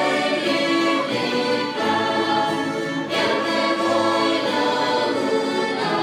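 Church string orchestra, violins to the fore, playing slow sustained chords, with a choir singing along.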